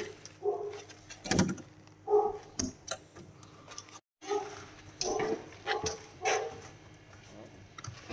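A dog yelping briefly, about six times, between sharp clicks and knocks from a plywood shipping crate's metal edge clips being worked open with a hand tool.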